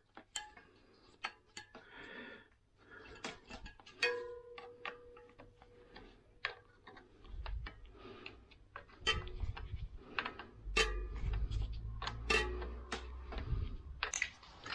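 Irregular metallic clicks and ticks of a tool tightening the mounting bolts of a hydraulic disc-brake caliper on an e-bike's front fork, with low rumbling handling noise in the second half.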